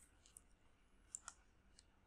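Faint computer mouse clicks in near silence: a single click about a third of a second in, then two close together just past the middle.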